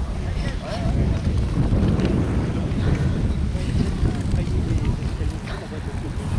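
Wind buffeting the camera's microphone: an irregular low rumble that swells about a second in and eases near the end.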